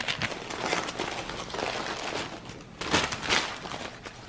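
Paper sandwich wrapper crinkling and rustling as a sub is handled and unwrapped, loudest about three seconds in.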